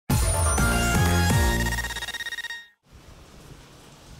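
Short electronic broadcaster ident jingle: bright ringing tones with three quick falling swoops underneath. It fades out and ends a little under three seconds in, leaving only faint background noise.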